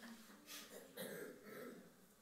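Near silence: room tone, with two faint brief noises about half a second and a second in.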